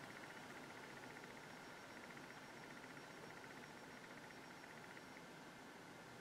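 Near silence: room tone with a faint, fast, high ticking that stops about five seconds in.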